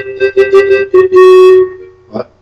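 Acoustic guitar strummed a few times under a steady held note, the music dying away in the last half second.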